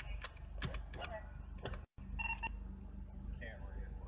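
A steady low hum inside a stopped car's cabin, with a few clicks in the first second and faint, brief bits of voice. A short electronic two-tone beep sounds just after a momentary gap in the audio about two seconds in.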